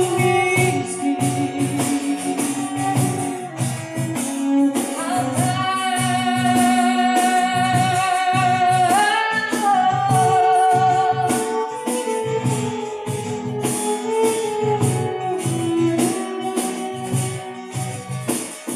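Live acoustic ensemble music: a woman sings a slow melody with long held, wavering notes, backed by violin and acoustic guitar over a steady light percussion beat.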